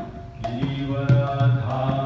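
A man's voice chanting a devotional song to the beat of a fibreglass mridanga drum. There is a brief break in the voice and drum at the start, then both resume with steady drum strokes under the sung line.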